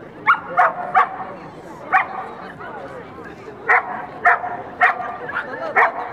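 A dog barking in short, sharp single barks, about eight in six seconds at irregular spacing, over the murmur of crowd talk.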